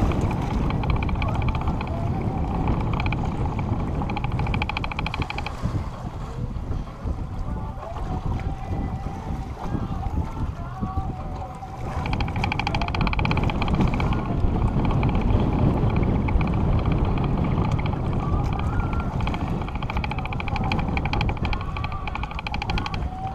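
Wind buffeting the camera microphone on an open boat in choppy water, a loud steady rumble. A high buzz sits above it and drops out for several seconds in the middle.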